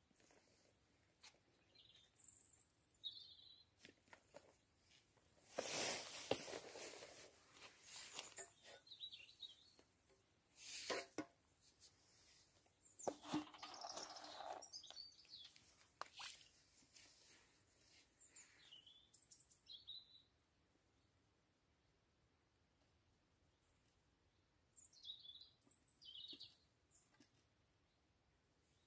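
Faint bird chirps, a few at a time, over a near-silent background, with several louder brief noises in the middle stretch.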